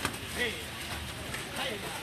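Mostly voices: a short shout of "hey" and other footballers calling to each other, over a steady background hiss.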